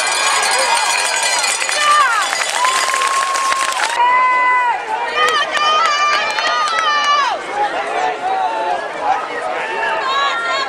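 Crowd of spectators yelling and cheering at a football game, with several voices holding long, high-pitched shouts. A dense wash of crowd noise drops away suddenly about four seconds in.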